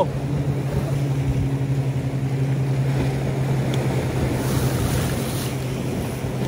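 A boat's engine running steadily, a low drone with a fast, even pulse that does not change.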